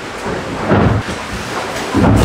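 Loud, steady rush of water and hull noise inside a Volvo Ocean 65 racing yacht below deck, with two heavy low thuds, one just under a second in and one at the end, as the hull slams through the waves.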